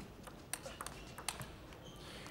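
Table tennis ball clicking off the bats and table during a rally: a string of sharp, light ticks a fraction of a second apart, starting about half a second in.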